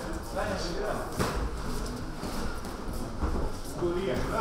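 Boxers' footwork shuffling on the ring canvas, with a couple of short knocks, under faint voices in a large hall.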